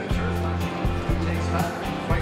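Music with a steady drum beat and a heavy bass line.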